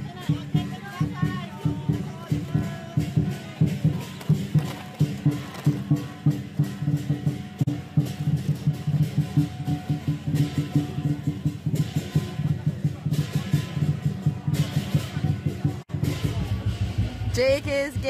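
Chinese lion dance percussion: a drum beaten in a fast, steady rhythm with cymbal crashes, over crowd chatter. The drumming cuts off suddenly near the end and a drawn-out voice follows.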